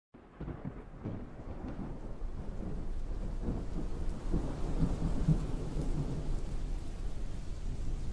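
A low, thunder-like rumble with a faint rain-like hiss, swelling gradually louder, with irregular deep surges loudest around the middle.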